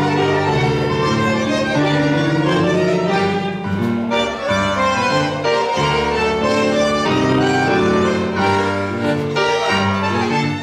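Tango orchestra of bandoneons, violins, piano and double bass playing a milonga, an instrumental passage with no singing.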